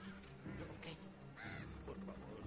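A crow cawing once, briefly, about one and a half seconds in, over a low, steady film-score drone.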